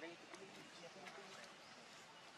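Faint, indistinct human speech in the background over a low hiss, with a single click right at the start.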